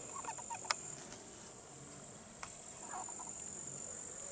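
Steady high-pitched trilling of insects in summer grass, with a few faint short calls about half a second in and again near three seconds, and one sharp click just before the one-second mark.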